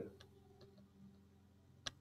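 Near silence: faint room tone over a video-call connection, broken by one sharp click shortly before the end.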